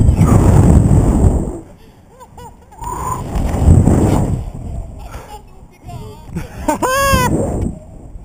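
Wind buffeting an action camera's microphone in two long rushes as the rope jumper swings through the air, with a short high-pitched cry from him near the end.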